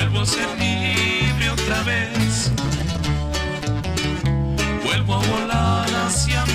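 Acoustic regional Mexican band music: a bajo sexto strumming chords with acoustic guitar over a bass guitar line.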